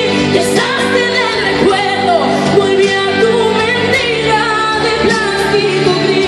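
A woman singing a Spanish pop song live into a handheld microphone over instrumental accompaniment, in long held notes with slides between them.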